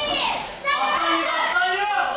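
Raised voices shouting and calling out, several overlapping and high-pitched, with no clear words.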